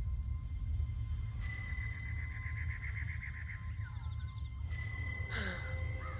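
Film-trailer sound design: a steady low rumbling drone under thin, high ringing tones, with a rapid pulsing trill starting about a second and a half in and a fresh sting near the end.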